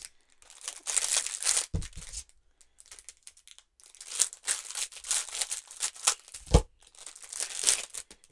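Clear plastic wrapping crinkling and rustling as it is cut and pulled off a roll of sticker tape with scissors, in two stretches. A soft knock about two seconds in and another near the end, as the scissors meet the table.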